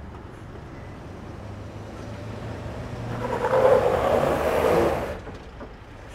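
Toyota Hilux on a rock climb with only the rear diff locker engaged: a steady low engine note, swelling for about two seconds past the middle as it pulls against the rock step and scrabbles, then easing off as it fails to climb.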